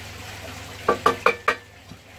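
Four short knocks and clinks in quick succession about a second in, as the freshly drilled oak cave is handled and lifted off the drill press's metal table, over a faint low hum.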